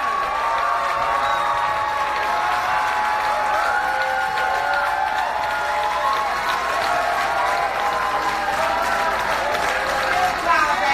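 A theatre audience applauding steadily, with held cheering voices over the clapping as the guest is welcomed onto the stage.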